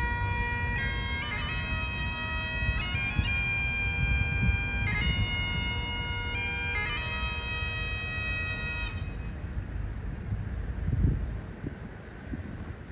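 Great Highland bagpipe played solo, a tune of changing notes over the steady drone, stopping about nine seconds in. Wind rumbles on the microphone throughout.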